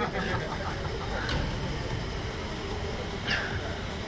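Steady rushing wind noise on the open-air ride gondola's onboard camera microphone, heaviest in the low end.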